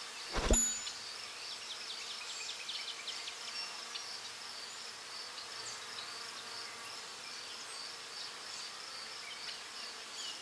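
Steady high-pitched trilling of insects, with many short chirps scattered through it, and a single sharp hit about half a second in.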